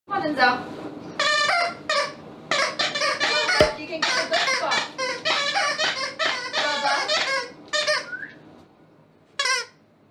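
German Shepherd whining and vocalizing in a run of high-pitched, wavering whines and squeals, with one short whine after a pause near the end.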